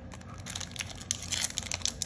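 Foil Yu-Gi-Oh booster pack wrapper crinkling in the hands as it is picked up and torn open, a quick run of sharp crackles starting about half a second in.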